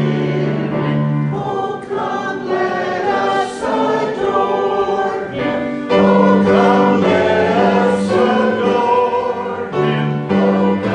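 Church choir of mixed men's and women's voices singing a hymn together, in held chords that change every second or so, growing louder about six seconds in.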